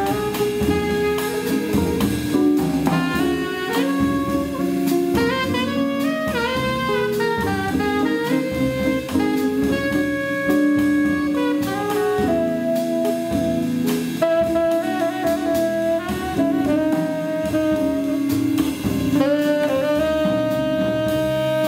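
Live jazz quartet: a tenor saxophone plays the melody in phrases of moving notes, then holds longer notes in the second half, over drum kit and band accompaniment.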